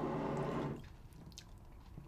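A drawn-out closed-mouth 'mmm' over chewing of crunchy breakfast cereal, stopping under a second in. After it come a few faint crunches and mouth clicks.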